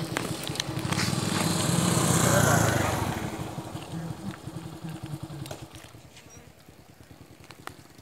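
A motorcycle passing on the road: its engine grows louder over the first two or three seconds, then fades away over the next few.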